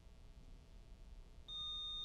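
Quiet room tone, then about one and a half seconds in a steady, high-pitched electronic beep from a quiz buzzer system starts: the signal that a contestant has buzzed in to answer.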